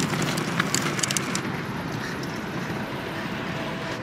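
The small wheels of a loaded pull cart rolling over pavement, a steady rolling noise with a few rattling clicks in the first second or so.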